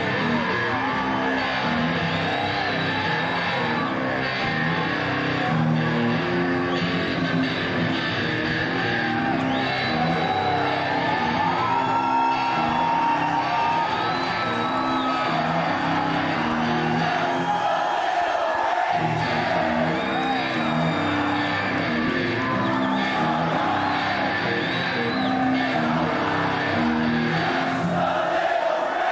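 Heavy metal band playing live in a concert hall: distorted electric guitar over bass and drums, steady and loud throughout.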